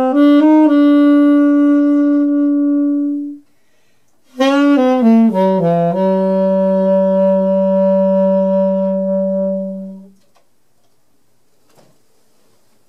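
Solo saxophone playing a jazz phrase. It holds a long note, pauses for about a second, then plays a quick falling run that settles on a long, low held note. That note ends about ten seconds in.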